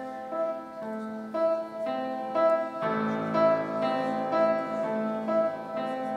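Instrumental keyboard music, piano-like: a slow melody of held notes over chords, with lower bass notes joining about three seconds in.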